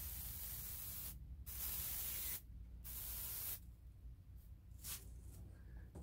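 Airbrush spraying a short test on cardboard at around 30 psi to check the air pressure: a steady hiss in three strokes, the first running about a second, then a few brief faint puffs near the end.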